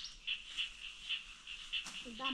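A small animal's high, thin chirp repeating steadily about four times a second, with one sharp click near the end.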